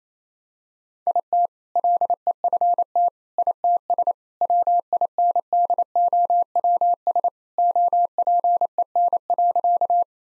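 Morse code sent as a steady mid-pitched beep, keyed on and off at 28 words per minute, starting about a second in. It spells out the punchline "IT LEFT ITS WINDOWS OPEN".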